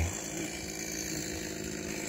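Chainsaw running steadily some way off, a constant even engine note.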